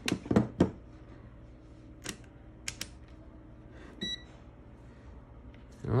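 Plastic clicks and knocks from a Klein Tools clamp meter being handled: its jaws snapping shut around a wire and the meter set down on a hard bench, then a few lighter clicks. About four seconds in, the meter gives one short electronic beep.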